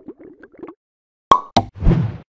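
Cartoon-style outro sound effects: a few faint quick pitched blips, then two sharp pops about a second in, followed by a louder, fuller burst with a low thud near the end.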